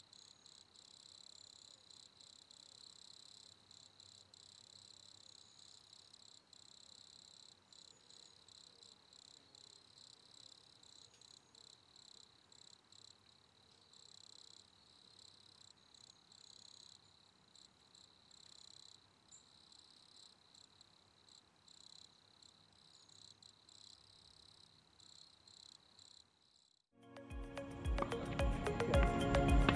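Near silence with a faint, steady high-pitched hiss; music comes in about a second before the end.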